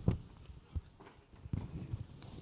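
About four soft, irregularly spaced thumps with faint rustling between: microphone handling and fabric noise as a full-body costume is pulled on over the head.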